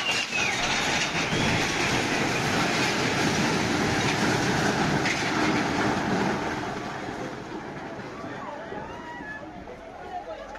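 A four-storey building collapsing: a loud, steady rumble of falling masonry and debris that fades away over the last few seconds, with voices faintly behind it.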